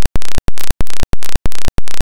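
Loud, harsh electronic noise pulsing on and off evenly, about three bursts a second, like a looping digital glitch.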